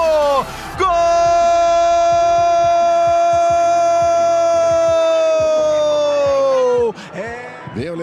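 Football TV commentator's drawn-out goal shout in Portuguese: after a brief break just after the start, one high note is held for about six seconds, sagging in pitch near the end before it stops.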